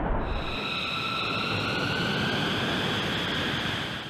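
Jet noise from a B-2 Spirit's four turbofan engines as the bomber passes low: a steady rush with a high whine over it, easing off slightly near the end.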